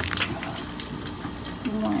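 Pot of vegetable soup with shrimp simmering, a steady bubbling hiss, with a utensil clicking against the pot once near the start.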